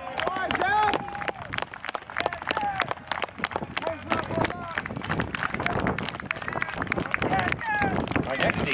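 Scattered clapping from spectators and players, mixed with cheering and calling voices, as a senior football player is honoured.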